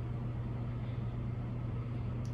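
Steady low hum with a faint even hiss underneath: room background noise, with no distinct event.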